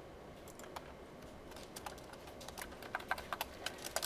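Faint, irregular keystrokes on a computer keyboard, scattered at first and coming more often in the second half.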